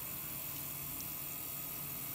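Electric pottery wheel spinning while wet clay is pressed down and centered by hand, giving a steady, even wet hiss.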